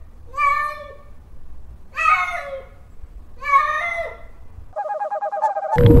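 Kitten meowing: three high calls about a second and a half apart, each dropping in pitch at the end.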